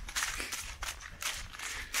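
Running footsteps on a snow-dusted, leaf-covered forest path, a short soft step about every half second.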